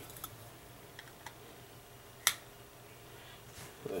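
Hard plastic magnetic card holder being handled: a few faint ticks and one sharp click a little past two seconds in.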